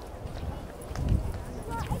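A spectator shouts encouragement, 'let's go!', near the end, with a few low, dull thuds before it.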